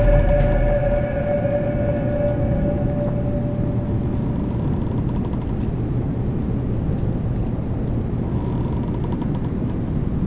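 A steady low rumbling drone with a constant low hum, under a held musical note that fades out over the first couple of seconds.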